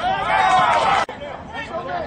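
Voices: a loud voice for about the first second, cut off abruptly, then quieter chatter of voices in the background.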